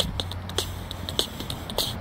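A pause between sung lines while walking: low background noise with a few faint, irregular clicks and rustles from footsteps and the hand-held phone.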